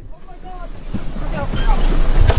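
Wind buffeting the microphone on an open fishing boat, with the rush of water and a fast-approaching boat's engine growing steadily louder, and people shouting in alarm over it.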